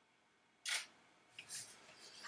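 Canon EOS 6D Mark II DSLR shutter firing once, a sharp mechanical clack about half a second in. A fainter short click follows about a second later.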